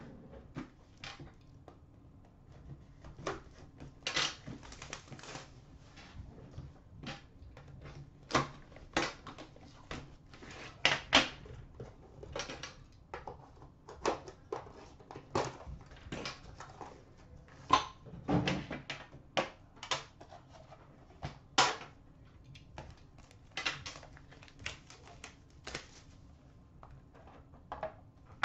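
Irregular clicks, taps and light knocks of a metal Upper Deck The Cup card tin being handled and opened, the lid coming off and the boxed cards taken out, with a sharper knock now and then.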